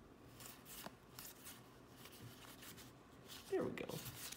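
Pokémon trading cards rustling and flicking softly against each other as a hand of cards is leafed through, with a few faint ticks. A brief vocal sound near the end is louder than the cards.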